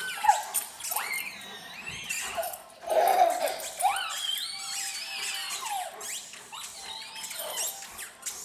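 A toddler squealing and shrieking with laughter in repeated high-pitched, rising and falling cries during a game of tug with a dog, the loudest about three seconds in.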